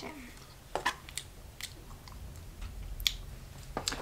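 A person eating: quiet chewing and mouth noises, with a few short sharp clicks spread through.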